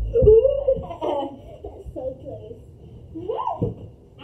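Young girls' voices and giggling, with no clear words, and a couple of dull low thumps, one just after the start and one near the end.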